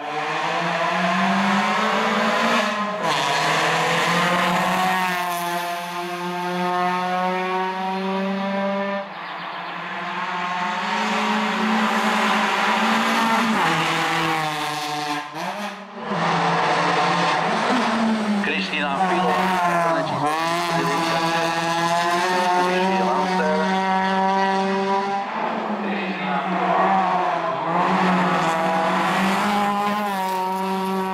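Renault Clio hillclimb race car's four-cylinder engine at full throttle, revving up through the gears. Each time the pitch climbs, it drops back as the driver shifts up, over several passes.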